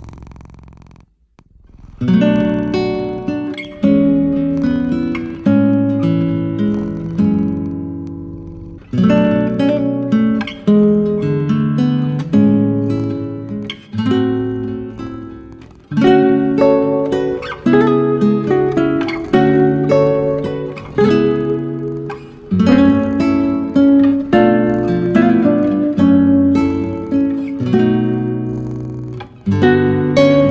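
Solo acoustic guitar playing a slow, gentle piece of plucked notes and chords. It begins about two seconds in, after a brief quiet gap.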